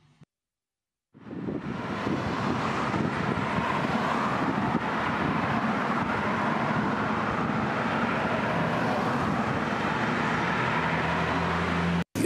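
After a second of silence, road traffic fades in: the steady noise of cars and vans driving along a city street, with a low engine hum growing near the end.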